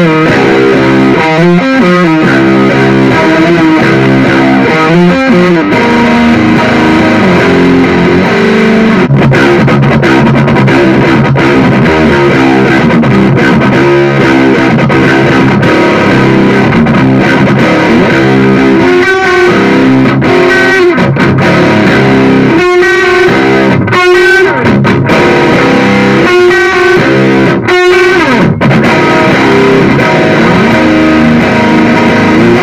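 Electric guitar played through a Blackstar ID:CORE 100, a 100-watt digital modelling combo amp: a continuous run of ringing chords and single-note lines, with several brief stops between chords in the second half.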